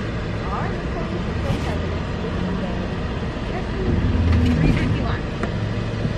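Car engine idling, heard from inside the cabin as a low steady rumble, with a few light handling ticks and knocks about four to five seconds in.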